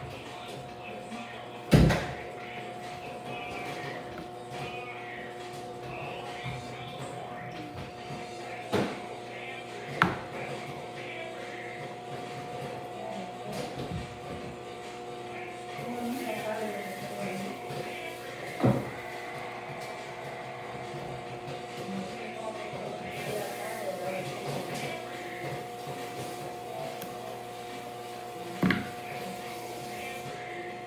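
Five sharp knocks, the loudest about two seconds in, over a steady hum and faint, indistinct voices and music.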